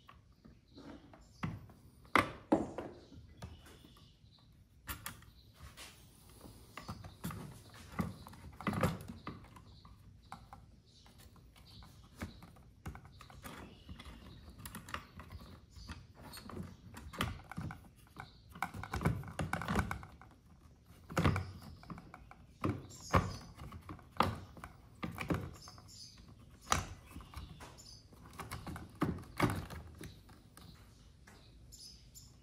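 Irregular clicks, taps and knocks of hard plastic parts and wire connectors being handled in a trolling motor's foot-pedal housing as a replacement control board is fitted.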